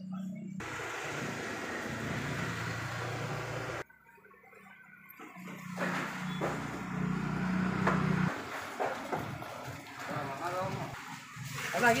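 Busy market ambience: indistinct voices and general background noise with a low hum, broken off abruptly about four seconds in. Scattered knocks follow, and voices grow clearer near the end.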